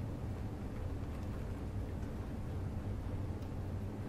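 Steady low background hum with no clear events.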